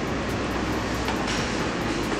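Steady rushing background noise with no distinct event in it.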